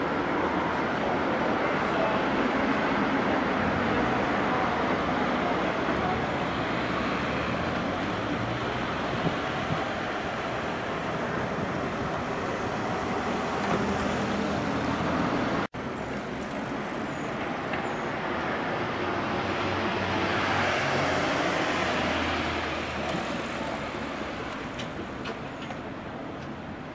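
Town street ambience dominated by road traffic: cars passing steadily, one swelling louder in the latter half before it fades. The sound drops out for an instant just past halfway.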